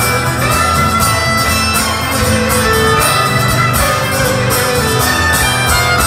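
Live rock band playing an instrumental passage, with a fiddle carrying the melody over strummed acoustic guitar and a steady drum beat.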